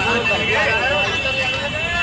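Inside a moving bus: low engine and road rumble under voices talking, with a steady high-pitched tone.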